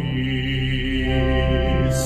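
A man singing a hymn with organ accompaniment, in slow held notes.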